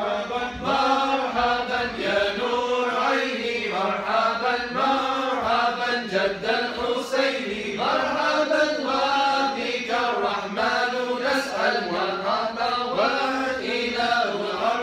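A group of male voices chanting a mawlid text in unison: melodic Arabic devotional verses in praise of the Prophet Muhammad, sung in short rising and falling phrases without a break.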